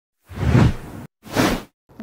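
Two whoosh sound effects of a logo intro sting. The first swells up about a third of a second in and cuts off suddenly, and the second is shorter.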